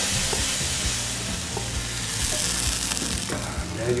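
A hot-oil tarka of fried garlic, dried red chillies and cumin poured into a pot of cooked lentil dal, sizzling as the oil hits the liquid. The sizzle is strongest at first and fades over a few seconds.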